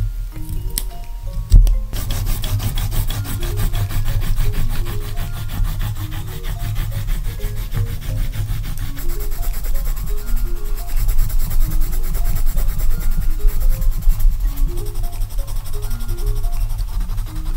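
Pencil scribbling rapidly back and forth on notebook paper, shading an area in with fast, even scratching strokes. A single sharp knock comes about a second and a half in, just before the scratching starts.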